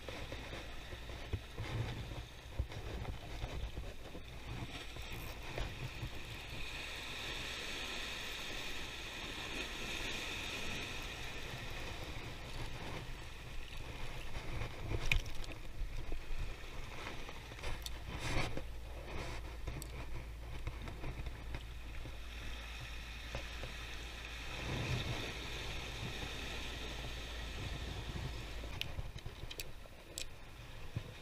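Wind rumbling on the microphone and sea water washing over rocks, with a spinning reel being wound in during two stretches and a few sharp knocks.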